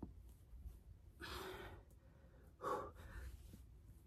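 A woman breathing hard between push-ups: a long exhale about a second in, then a shorter, louder sighing breath with a little voice in it near three seconds.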